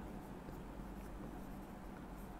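Faint sound of chalk writing on a blackboard, over a low steady hum.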